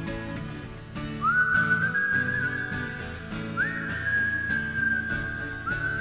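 Instrumental break in a folk song: a high whistled melody enters about a second in, in long held notes that each slide up into pitch, over a strummed acoustic guitar.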